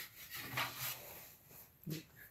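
Faint rubbing of a hand brushing over a freshly sanded wooden board, a few soft strokes in the first second.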